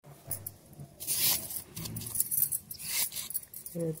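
Knife scraping the peel off raw green bananas in a few rough strokes, with a light clink of bangles on the working wrist.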